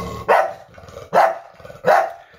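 Bulldog barking three short times in alarm at a piece of wrapping paper that frightens it.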